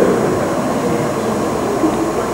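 Steady background hiss and room noise from an old camcorder tape recording in a hall, with faint, indistinct voices.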